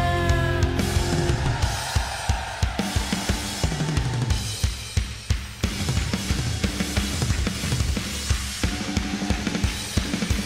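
Rock drum kit playing a solo in a live concert recording: fast bass drum, snare and cymbal strikes, starting as the band's held notes die away in the first second or two.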